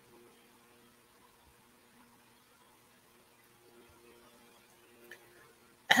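Near silence on a video-call line: a faint steady hum of room tone, then a voice starts right at the end.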